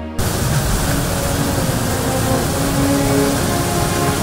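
Loud rushing of the Jinsha River's whitewater rapids in Tiger Leaping Gorge. It cuts in abruptly just after the start and then holds steady, with background music still faintly heard under it.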